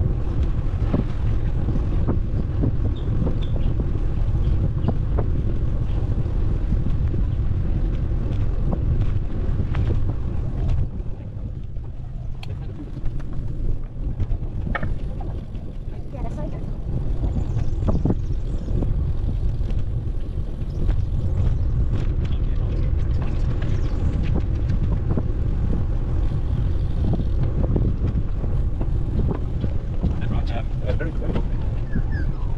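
Wind buffeting the microphone of a camera riding on a moving bicycle: a steady low rumble that eases for a few seconds around the middle, with scattered light clicks and knocks.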